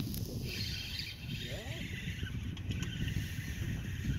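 Wind on the microphone outdoors on a boat: a low, uneven rumble under a steady hiss, with a brief rising note about a second and a half in.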